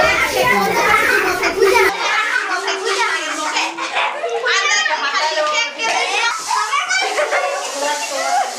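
A group of excited children's voices, many at once, with high-pitched shouts and squeals.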